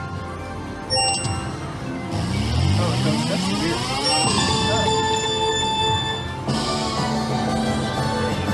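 Konami video slot machine's electronic game sounds during a free-games bonus: a short reel-stop chime about a second in, then a rising sweep, then a held-note win jingle as the win meter counts up.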